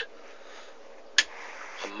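A single sharp click about a second in, from the function slide switch on a Sharman SWR-006 SWR meter being moved into the SWR position, over a faint steady hiss.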